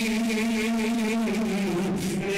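A man's voice chanting in melodic recitation, holding one long note with a slight waver that dips a little near the end.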